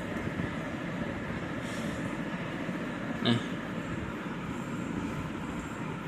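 Steady, even background noise with a constant hum, with one brief short sound about three seconds in.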